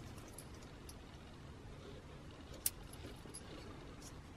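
Faint small clicks and rattles of a plastic wiring-harness connector being handled as its locking piece is slid out, with one sharper click about two-thirds of the way through.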